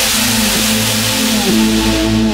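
Electronic dance music in a drumless breakdown: held synth chords that slide down in pitch at each change, about once a second, over a steady hiss of white noise.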